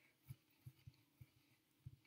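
Near silence, with five or six faint, soft low thumps as a palm rolls a ball of Play-Doh against a tabletop.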